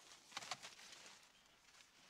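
Near silence: faint outdoor room tone with a couple of soft ticks about half a second in.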